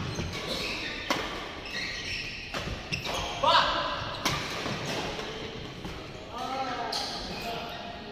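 Badminton rally in a large echoing hall: sharp cracks of rackets striking a shuttlecock, one every one to two seconds, with voices in between.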